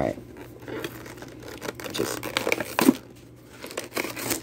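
Action-figure packaging being pulled apart by hand: a cardboard card back and a clear plastic blister crinkling, tearing and clicking in irregular bursts, with a short lull about three seconds in.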